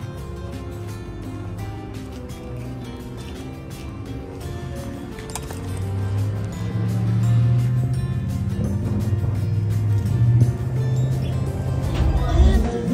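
Live band music with a steady drum beat and a prominent bass line, heard from outside the venue and growing louder about halfway through.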